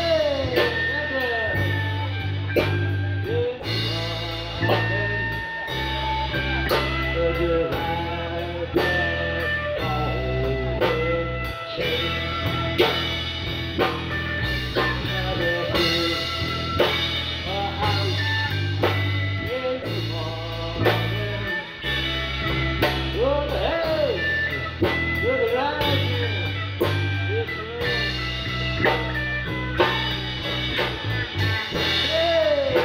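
Live blues band playing: an electric bass holding low notes, a lead electric guitar with notes that bend up and down in pitch, and a drum kit keeping a steady beat.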